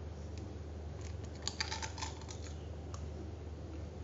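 Eggshell being cracked and pulled apart by hand over a bowl: a few light clicks, then a cluster of sharp little cracks and taps about a second and a half in.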